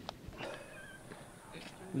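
Mostly quiet, with a faint, distant human voice calling about half a second in and a light tap near the start.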